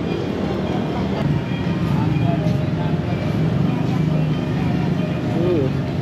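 Busy street ambience: a steady low rumble of traffic under background voices and faint music.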